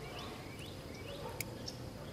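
Faint outdoor birdsong: several short, rising chirps from small birds, with a single sharp click about a second and a half in.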